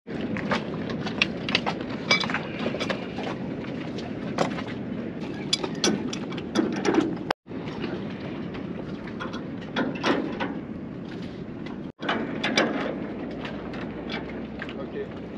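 Scattered sharp metallic clicks and clinks of hand work on a sailboat's shroud fittings, over a steady hiss of wind and water. The sound cuts out abruptly twice.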